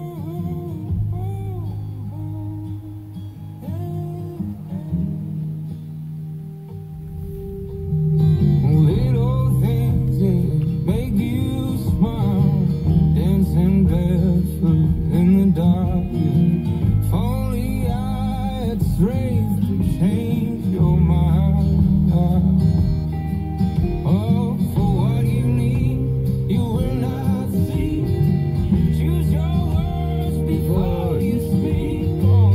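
A song with acoustic guitar and a singing voice: a sparse, quieter opening, then the full accompaniment comes in and the music gets louder about eight seconds in.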